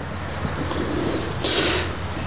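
Birds chirping in the background over a steady low hum, with a brief scratchy noise about a second and a half in.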